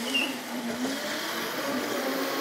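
Electric Crazy Cart drift kart running, its motor whine wavering up and down in pitch as it drifts, with a brief high squeak just after the start.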